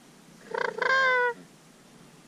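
Sandhill crane call blown on a hunter's mouth call: a short rolling rattle that runs into one held, ringing note falling slightly in pitch.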